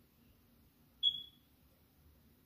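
A single short high-pitched beep about a second in, holding one pitch and trailing off quickly.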